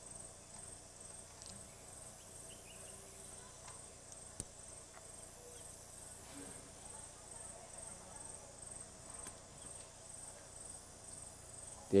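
Faint insects chirping outdoors in a steady, high-pitched pulse, a few pulses a second, with a single sharp click about four seconds in.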